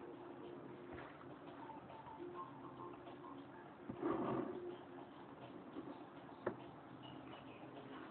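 Faint steady hum of a small cooling fan, with a few light clicks and a brief rustle of hands shifting their grip on the camera body about four seconds in.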